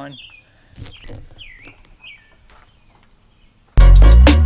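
A bird chirping outdoors: a few short, falling calls over faint background sound. Near the end loud electronic music with a heavy drum beat cuts in suddenly.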